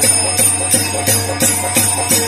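Faruwahi folk dance music: drums and jingling bells keeping a steady beat of about three strokes a second over a held tone.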